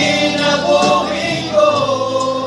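A small group of men's voices singing a church song together.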